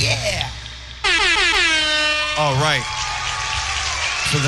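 A live band's song ends and its last chord dies away. About a second in, a loud horn-like tone starts suddenly, slides down in pitch, wavers briefly and then holds steady.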